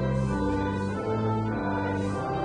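Church organ playing slow, sustained chords that change every half second to a second.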